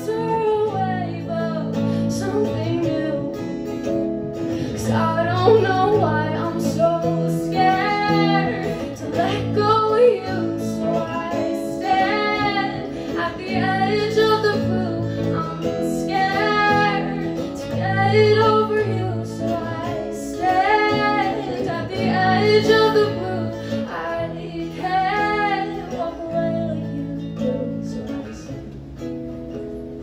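A woman singing live to her own acoustic guitar, her sung phrases coming about every two seconds over the guitar chords; it gets quieter near the end.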